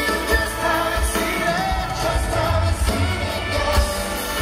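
Live pop band with a lead singer played through a large concert PA, recorded from within the audience: a sung melody over heavy, pulsing bass.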